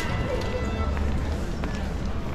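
Busy pedestrian shopping street: passersby talking nearby and footsteps on stone paving, over a steady low rumble.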